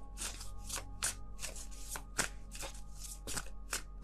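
A deck of tarot cards being shuffled by hand, a quick run of soft papery strokes about four a second, over faint background music.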